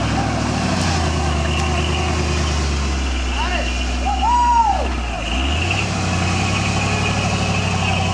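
Engine of a lifted Ford 4x4 running steadily at low revs as it crawls up a rutted dirt trail, picking up a little in pitch about two-thirds of the way through. A brief high rising-and-falling sound is heard about halfway.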